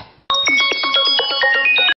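Mobile phone ringtone playing a fast melody of bright, high notes for an incoming call. It starts about a third of a second in and cuts out for a moment near the end.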